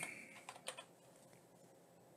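A few faint keystrokes on a computer keyboard, typing a short word, about half a second in.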